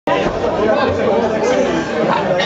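Chatter of several people talking at once in a room, overlapping and unintelligible, starting abruptly as the recording begins.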